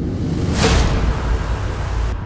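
Trailer-music sketch playing back from one-shot samples: a low, distorted brass braam drone, with a breathy whoosh swelling over it and cutting off suddenly right at the end.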